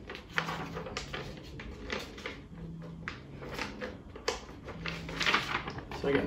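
A sheet of paper being handled and crinkled, with irregular rustles and small taps.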